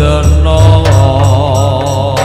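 Javanese gamelan music (gending) for a tayub dance. A singer's voice wavers with vibrato over sustained low gong tones and regular percussion strokes.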